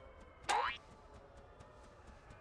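A cartoon 'boing' sound effect: one quick upward-gliding twang about half a second in, over faint background music.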